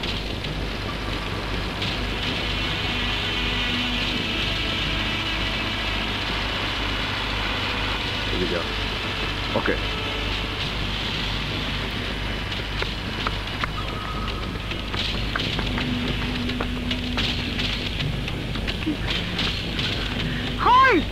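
Steady hiss and low hum from a worn film soundtrack, with a few faint brief sounds scattered through.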